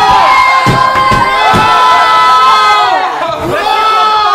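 A group of young men shouting and cheering together, several voices holding long yells at once, with a few dull thumps about a second in.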